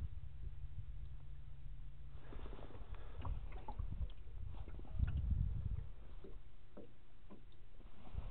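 Small waves slapping against a boat's hull, with a low rumble of wind on the microphone and a few light knocks and ticks; a heavier low thump about five seconds in.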